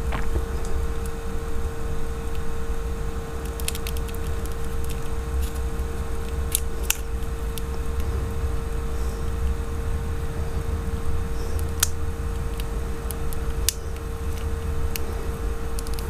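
Scattered light clicks and ticks of steel tweezers against the metal SIM-card holder cover and plastic frame of a Nokia 5630 XpressMusic as the cover is worked into place, over a steady background hum.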